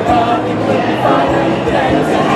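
A mixed high school choir singing together.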